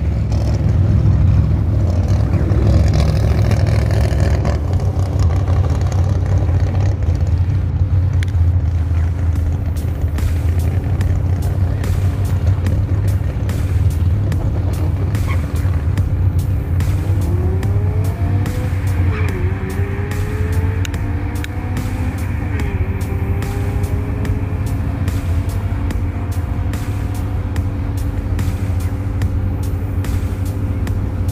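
Race cars' engines idling with a steady low drone. About seventeen seconds in, a car accelerates away, its engine pitch climbing, dropping at a gear change, then climbing again.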